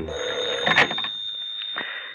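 Telephone bell ringing, dying away about a second in. A thin steady high whistle runs underneath.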